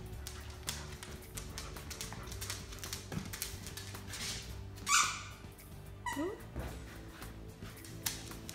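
A dog making a few brief whining or yelping calls over steady background music. The loudest is a short, sharp call about five seconds in, followed just after six seconds by a quick rising whine.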